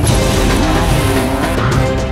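Soundtrack music with an off-road race buggy's engine and its tyres sliding through dirt mixed in, a rush of noise over the first second and a half.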